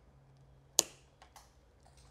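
Wire cutters snipping through a thin yellow thermostat wire: one sharp snap a little under a second in, followed by a couple of faint clicks from the tool, over a faint low hum.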